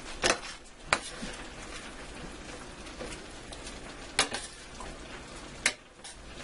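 A metal spoon stirring chicken and vegetables in teriyaki glaze in a stainless steel skillet, clinking against the pan about five times over a steady sizzle.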